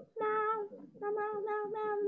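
A child singing on one held, nearly level pitch in two phrases, a short one and then a longer one starting about a second in.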